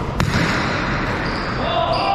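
One sharp crack of a hard jai alai pelota being hit, about a fifth of a second in, echoing in the large concrete fronton hall.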